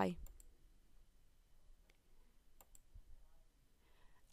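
A few faint computer mouse clicks, spaced out over a few seconds.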